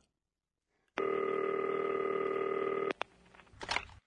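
A telephone ring sounds once for about two seconds, a steady electronic tone, and cuts off with a click as the call is answered.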